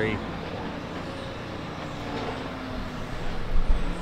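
Payloader engine running steadily at a distance while it spreads straw in a barn pen, heard as a steady machine noise with a low rumble swelling near the end.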